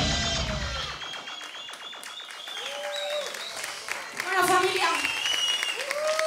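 Audience applause and cheering as the band's song stops about a second in, with shouted whoops among the clapping. Voices call out near the end.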